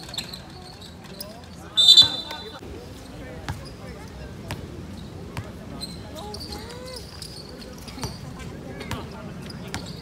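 Basketball bouncing on a hard court during play, single knocks every second or so, with players calling out. A short, loud referee's whistle blast about two seconds in is the loudest sound.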